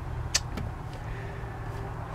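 Steady low hum, with one sharp click about a third of a second in and a fainter one shortly after.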